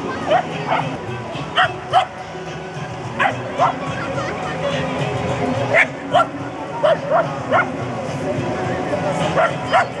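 Small dog barking over and over, short sharp barks mostly in quick pairs.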